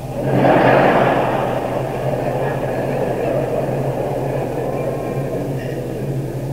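A live audience laughing, loudest about a second in and slowly dying down, with a steady low hum from the old cassette recording underneath.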